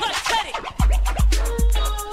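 Old-school hip hop track: turntable scratching of quick rising and falling sweeps, then a drum beat with a deep, booming kick drum comes in just under a second in, hitting about every 0.4 s.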